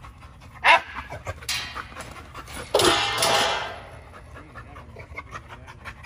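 American bully dogs panting, with a short sharp cry about a second in and a louder, rougher noise lasting about a second near the middle.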